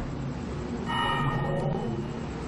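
Short TV news transition sting over an 'En Vivo' graphic: music with bell-like tones, a new chord struck about a second in.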